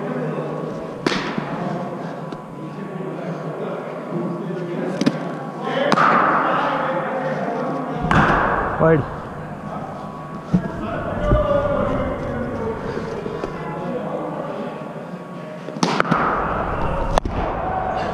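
Cricket bat striking the ball in an indoor net hall: sharp knocks about half a dozen times, near the start, twice around five to six seconds in, once about eight seconds in and twice near the end, each ringing briefly in the large hall over a constant murmur of voices.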